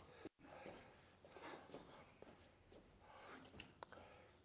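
Near silence: room tone, with a few faint, brief ticks near the end.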